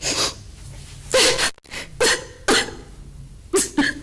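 A person making short, breathy, voice-like bursts without words, about six in four seconds and irregularly spaced, the loudest about a second in.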